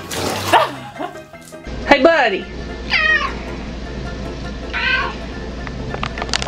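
Domestic cat meowing three times, each a short call that bends in pitch, about two, three and five seconds in. A brief rush of noise at the start.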